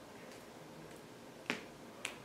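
Dry-erase marker tapping on a whiteboard while writing: one sharp click about one and a half seconds in, over quiet room tone.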